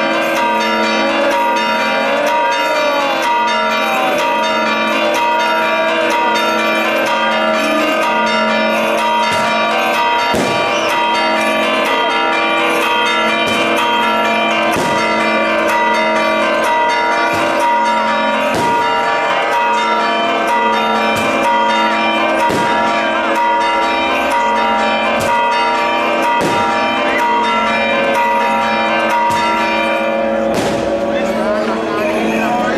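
Church bells pealing rapidly and continuously, ringing out the Resurrection at the Orthodox Easter service. From about ten seconds in, firecrackers bang irregularly, every second or two, over the bells.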